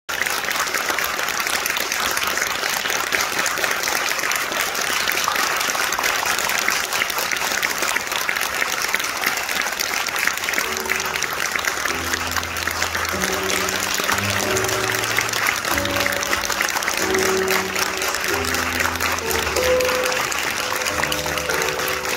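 Audience applauding steadily throughout. About ten seconds in, music with held low and middle notes comes in under the applause.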